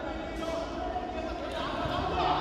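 Indistinct voices in a sports hall during a wrestling bout, with dull thuds of the wrestlers' bodies on the mat.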